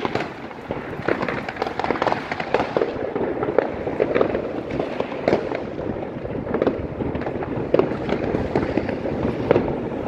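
New Year's Eve fireworks and firecrackers going off all over the neighbourhood: a dense, unbroken crackle of overlapping bangs with no pause.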